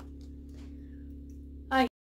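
Room tone: a steady low hum with no other distinct sound, broken near the end by a short spoken 'uh' and then a sudden cut to silence for an instant.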